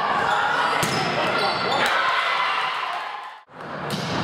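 Volleyball being struck in a gym amid a crowd of voices calling and cheering, with sharp hits about a second in, again near two seconds, and once more near the end. The sound briefly drops out about three and a half seconds in.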